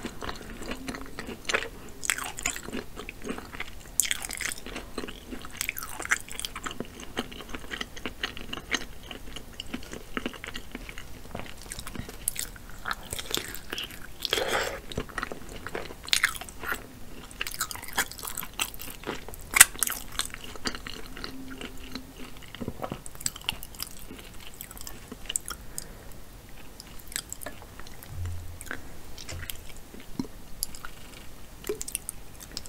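Close-miked chewing and biting of sauce-coated lobster tail meat: wet mouth sounds with irregular sharp clicks and crunches, a few louder ones around the middle.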